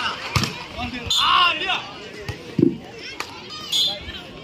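A volleyball being struck and hitting the court, several sharp thumps amid shouting from players and spectators.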